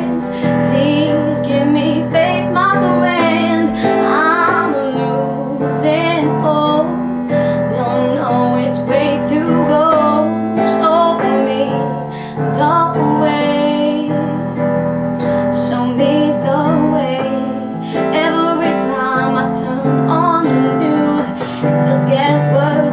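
A woman singing her own song while accompanying herself on piano: a sung melody over sustained piano chords that change every few seconds.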